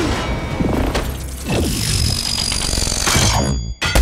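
Action-film fight soundtrack: dramatic music mixed with hit and shattering sound effects. Near the end the sound cuts out for a moment, then comes back with a loud hit.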